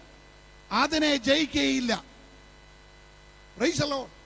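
A man's voice through a microphone in two short spells, one about a second in and a brief one near the end. A steady electrical mains hum is heard in the pauses.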